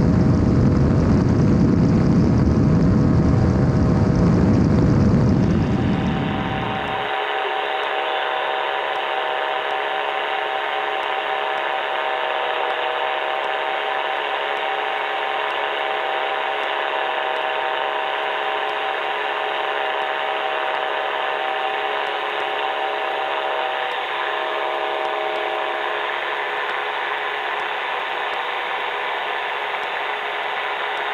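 Ultralight trike in cruising flight: engine and pusher propeller with wind noise in the open cockpit, loud and deep for about the first six seconds. The sound then turns thinner, a steady engine drone at one unchanging pitch with no deep rumble, holding to the end.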